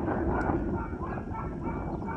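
Wind buffeting the microphone in a steady low rumble, with a few faint short calls in the background.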